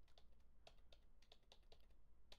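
Faint typing on a computer keyboard: a run of about nine light, irregular clicks.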